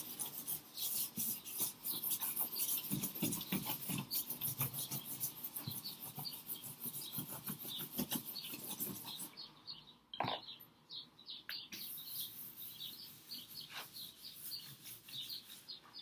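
Stick of charcoal rubbed and scratched across drawing paper in quick repeated strokes, going over the paper again to darken its mid-tone. The strokes ease off briefly near the middle, then carry on.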